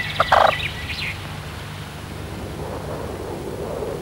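Birds calling: thin high chirps in the first second and one short rapid-pulsed call about a quarter second in, over a low steady hum.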